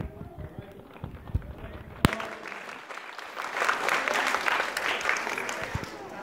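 Chatter of many voices, a single sharp click about two seconds in, then a round of applause that builds from about three and a half seconds and tapers off near the end.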